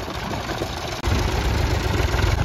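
Small farm tractor's engine running as it drives over a pile of broken roof tiles. Its low rumble grows louder about a second in.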